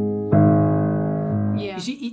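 Piano chords struck and left to ring: a loud chord about a third of a second in, its bass changing about a second later, then fading. It is played as the wrong way to take the passage, with the lower note of the octave too loud, which spoils the flow of the line.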